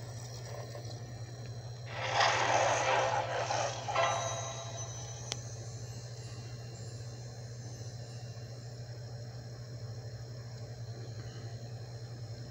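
A brief burst of sound effect from the DVD's MGM.com bumper, heard through the TV speaker about two seconds in and lasting about two seconds, over a steady low hum.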